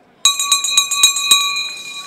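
A town crier's brass handbell rung rapidly, about a dozen quick strokes in a second and a half, its ringing carrying on after the last stroke.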